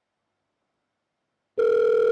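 Silence, then about one and a half seconds in a steady electronic telephone tone starts: one held buzzy pitch like a dial tone, used as the sound effect for an on-screen phone-call graphic.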